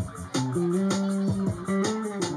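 Live band music: electric guitar and bass guitar holding long low notes over a quick, steady beat.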